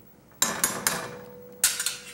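A metal spoon clanking against a stainless steel stockpot, a few sharp knocks in two groups, with the pot ringing faintly after them.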